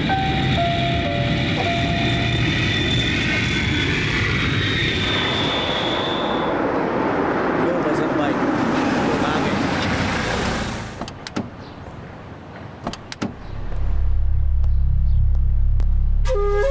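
Four-engine jet airliner (a Boeing 747) low over the runway: loud, steady rushing jet noise with a high whine that fades out about halfway through. The noise drops away near the two-thirds mark, a few sharp clicks follow, and a low steady hum sets in toward the end.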